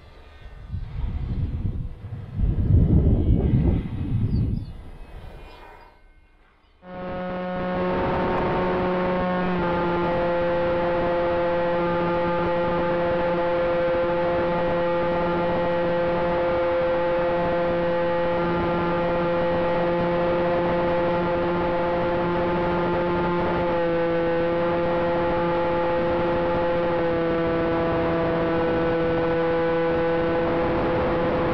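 A loud, gusting low rumble for the first few seconds. Then, about seven seconds in, it cuts to the FX-61 Phantom flying wing's electric pusher motor and propeller, picked up by its onboard camera's microphone, running with a steady droning whine that steps slightly in pitch with throttle changes.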